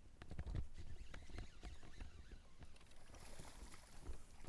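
A kayak moving through shallow swamp water: irregular knocks, clicks and scrapes from the hull and gear. Water swishes and splashes near the end.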